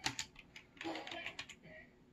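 Light clicks in quick succession, like keys being typed on a keyboard. They come in two short runs, one right at the start and one about a second in.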